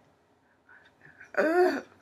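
A woman's voice: a single short, pitched vocal syllable about one and a half seconds in, preceded by a few faint mouth or hand noises.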